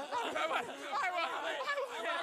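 Several voices talking or vocalising over one another, with no clear words.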